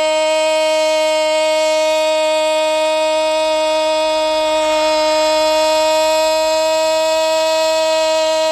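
A male radio football commentator's drawn-out goal cry: a single loud 'gol' held on one steady, high pitch without a break, celebrating a goal just scored.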